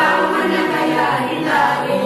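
Choral music: a group of voices singing long held notes together.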